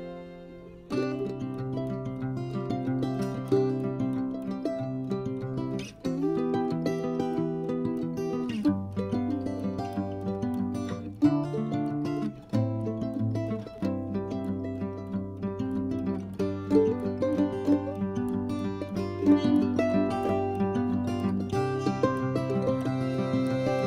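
Background instrumental music with plucked strings and changing chords. It dips briefly and comes back in about a second in.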